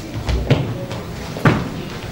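Marching footsteps stamping on a wooden floor: two heavy steps about a second apart.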